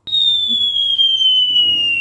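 Descending whistle sound effect, the cartoon 'falling' whistle: a single clear tone that starts abruptly and slides slowly and steadily down in pitch.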